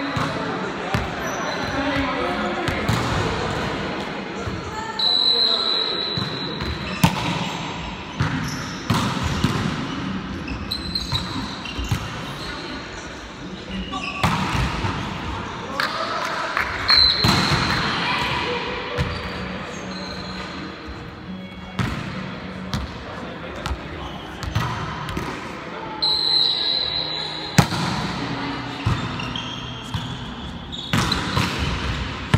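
Indoor volleyball being played: the ball is struck and hits the floor again and again, a series of sharp smacks, while players call out to each other. The sounds echo in a large gymnasium.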